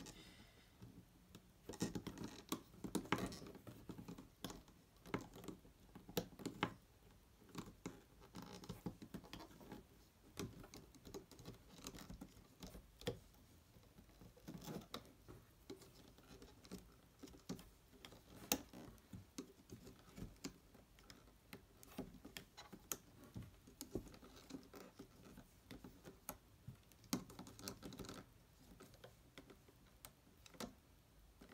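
Faint, irregular clicks and scratches of a loom hook and rubber bands being worked on the plastic pegs of a Rainbow Loom while band ends are tied off.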